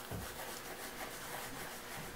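A foam stamping sponge rubbed in quick repeated strokes over embossed cardstock, a soft steady scratchy rubbing. It is working ink into the paper to darken the embossed image.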